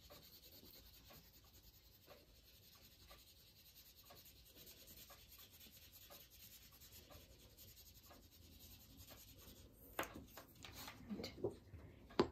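Faint scratching of a wax crayon rubbed back and forth over cardstock laid on a leaf, at about two strokes a second, with a few louder strokes near the end.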